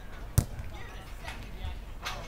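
A football struck hard once, a sharp thud about half a second in, with players' voices calling in the distance.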